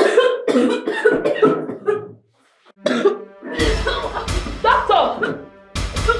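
A woman coughing in a hard, rapid fit for about two seconds, then, after a brief pause, strained vocal sounds over dramatic background music with a heavy bass.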